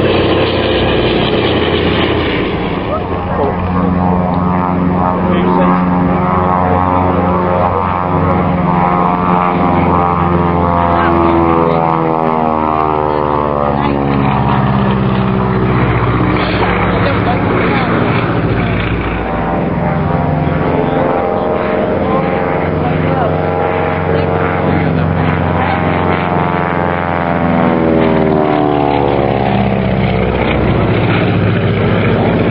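Twin radial-engined propeller aircraft flying low past: first a C-47 Dakota, then, after a change a few seconds in, a Beech 18. Their piston engines drone steadily, and the tone sweeps up and down as each aircraft passes.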